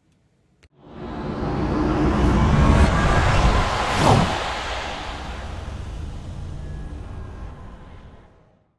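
Whoosh-style logo sting sound effect: a noisy rush swells up over a couple of seconds, a falling sweep drops in pitch about four seconds in, then the sound fades out slowly.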